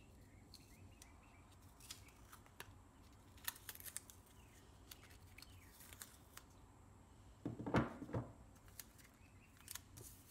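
Faint handling sounds of a lithium-ion battery cell pack: small clicks and crinkles as adhesive insulating paper pads are peeled off the cells, with a louder bump and rustle about eight seconds in.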